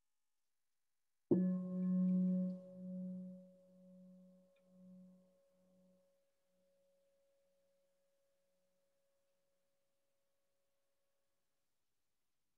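A meditation bell struck once, ringing with a low hum that pulses as it fades over several seconds, while a higher overtone lingers faintly almost to the end. It marks the close of the guided meditation period.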